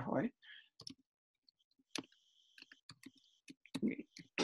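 Faint, irregular clicking of computer keys or mouse buttons: about ten short clicks spread unevenly over a few seconds.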